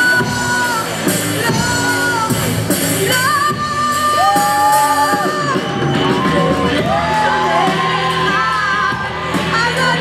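Live rock band with female lead vocals, electric guitars, bass and drums, the singers holding long notes with slides between them. The cymbals ease off about three seconds in, and the sound carries the echo of a large hall.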